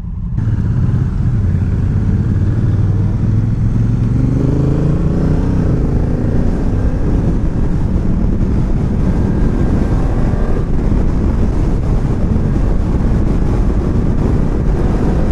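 Honda Africa Twin DCT's 998 cc parallel-twin engine accelerating hard from a standstill. The revs climb in two long pulls, with gear changes about five and about ten and a half seconds in, over a steady rush of road and wind noise.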